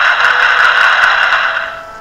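Quiz suspense sound effect: a steady, loud rattling roll that fades out near the end, played as the correct answer is about to be revealed.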